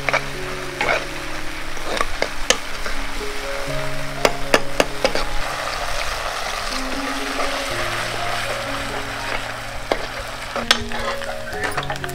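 Food frying in hot oil in an iron wok: a steady sizzle, with a metal ladle clinking against the pan now and then as it is stirred.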